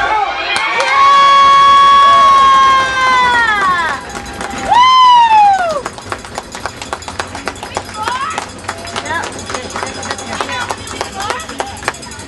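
A spectator close by gives a long, loud, high-pitched cheering scream about a second in that trails off after two or three seconds, then a shorter one around five seconds in. After that come many sharp clacks and knocks of sticks and puck on the ice, with scattered voices.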